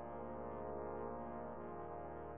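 Trombone octet playing soft, slow sustained chords, the harmony shifting about a second and a half in.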